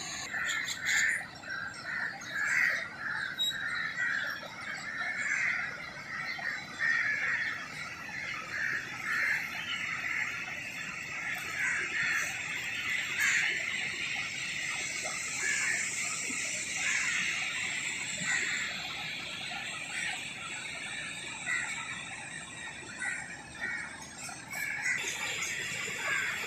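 Birds chirping in short, repeated calls over a steady rush of river water flowing through a barrage.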